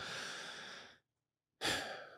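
A person breathing close to a podcast microphone. There is a sigh-like breath of about a second, then silence, then a shorter breath near the end.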